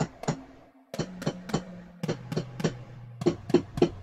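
Sampled drum toms playing a fill: sharp hits in groups of three, each group pitched lower than the last, stepping down from high toms to floor tom.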